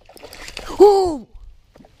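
A hooked largemouth bass splashing at the surface, followed about a second in by one loud cry from a man that rises and falls in pitch.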